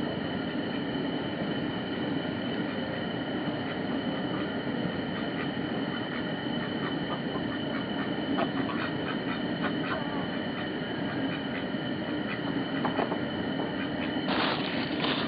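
A steady rumbling noise with a faint, high, steady tone over it, unbroken throughout.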